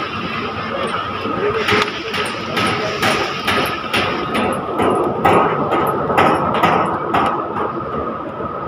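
Crowd chatter echoing in a large indoor hall, with footsteps going down stairs at about two a second from a couple of seconds in and a steady high hum underneath.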